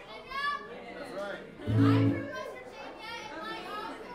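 Fiddle and acoustic guitar playing, with the bar crowd talking over it; a louder low note sounds about two seconds in.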